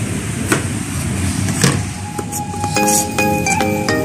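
Two sharp knife strikes on a plastic cutting board while green onions are cut, about half a second and a second and a half in. Background music with marimba-like notes comes in about halfway through.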